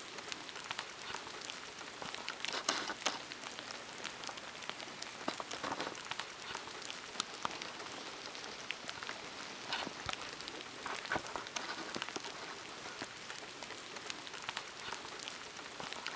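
Steady rain falling on wet pavement, an even hiss sprinkled with many small drop ticks and a few louder ones.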